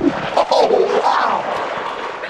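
Electronically warped voice from a pitch and chorus audio effect, its pitch wobbling up and down with no clear words.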